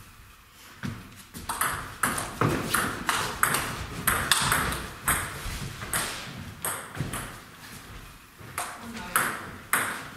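Table tennis ball in play: the celluloid/plastic ball clicking sharply off the bats and the table about twice a second through a rally, then a short lull and a few more clicks near the end as play restarts.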